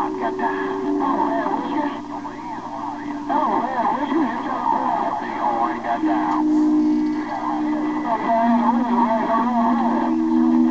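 Transceiver speaker receiving a crowded CB channel 6 (27.025 MHz): several stations' voices garbled over one another. Under the voices, steady low whistling tones shift in pitch every second or two.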